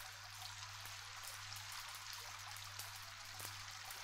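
Vinyl record surface noise from the stylus riding an unmodulated groove: a steady hiss with scattered crackles and small pops over a low steady hum.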